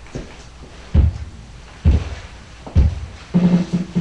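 Opening of a reggae backing track: three single bass-drum beats about a second apart, with low bass notes coming in near the end.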